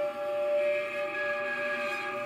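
Archtop guitar bowed with a cello bow, sounding a steady drone of several overlapping sustained tones, with higher tones swelling in about halfway.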